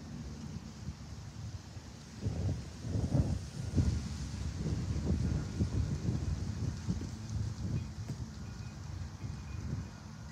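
Wind buffeting the microphone in irregular gusts, strongest from about two seconds in and easing near the end.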